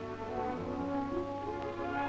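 Background film music, several instruments holding notes together and moving from chord to chord, over a low steady hum.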